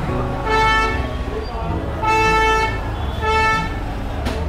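Motor scooter horn honking three times in quick succession, the middle honk the longest.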